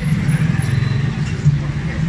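Street noise: a motor vehicle engine running nearby, steady and loud, with voices of people around.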